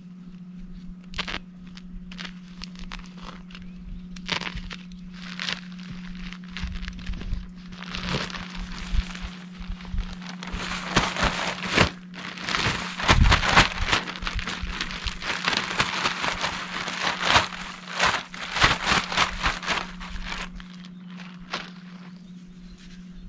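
Plastic sack of garden soil crinkling and rustling as it is handled, shaken and emptied, with scattered sharp cracks and crunches. The noise is busiest in the second half.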